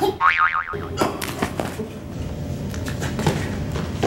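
Cartoon 'boing' spring sound effect: a wobbling tone that swings up and down for about half a second, followed about a second in by a few sharp knocks.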